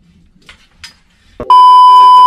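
Television test-card tone: a loud, steady electronic beep that cuts in sharply about one and a half seconds in, the beep that goes with colour bars.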